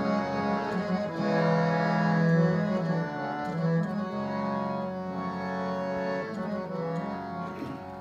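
Harmonium playing sustained reedy chords and a melody in Sikh kirtan style, with a few tabla strokes.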